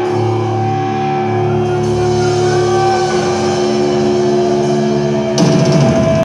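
Heavy metal band playing live, with distorted electric guitars holding sustained notes over drums. About five seconds in, the sound turns suddenly louder and rougher.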